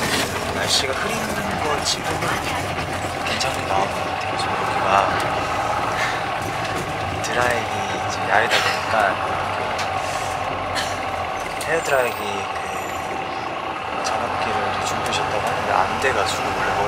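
Double-decker bus running, heard from inside the cabin: a steady engine hum and road noise.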